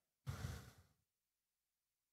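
A man's short sigh into a handheld microphone, about half a second long and starting a quarter second in, then near silence.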